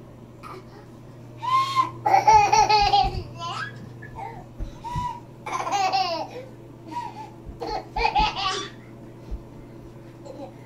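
Toddler giggling in high-pitched bursts each time her sister dances, the longest fit about two seconds in, with more giggles around six and eight seconds in.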